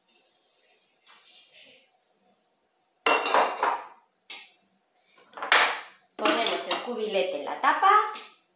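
A faint soft hiss in the first two seconds as sugar is poured into the Thermomix's steel mixing bowl, then several loud clatters and knocks of the plastic lid being fitted onto the bowl.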